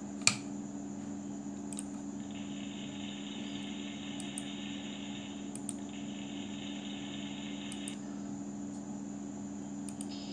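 A sharp mouse click, then PowerPoint's built-in "Applause" transition sound playing faintly and thinly through a computer speaker for about six seconds, briefly broken by another click partway through. A steady low hum runs underneath.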